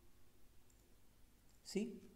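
A few faint computer mouse clicks over quiet room tone, then a man's voice comes in near the end.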